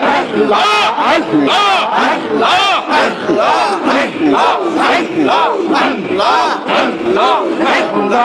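Crowd of men chanting a zikir in unison, loud rhythmic group shouting of a short repeated invocation, about two shouts a second, each rising and falling in pitch.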